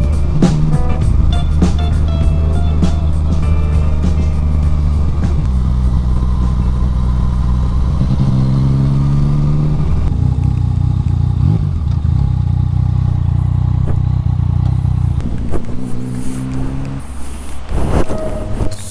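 Yamaha Tracer 900 GT's 847 cc inline three-cylinder engine with an Akrapovič exhaust, running under way up a hill road, the revs climbing briefly about eight seconds in. It eases off near the end as the bike slows to a stop.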